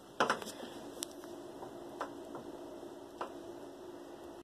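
Phone handling noise: a few faint clicks and light taps, roughly one a second, over a low steady hum.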